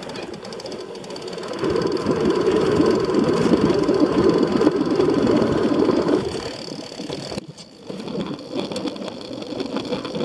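Rough, steady rumble of wind and tyre noise on a moving bicycle's camera microphone, loudest through the middle. It drops off abruptly about seven and a half seconds in, then picks up again more quietly.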